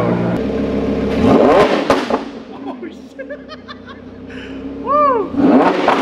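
Lamborghini Huracan V10 idling after a fresh start, then revved once about a second in, the pitch rising sharply and falling back before it settles to a quieter idle. Voices and laughter come in over it in the second half.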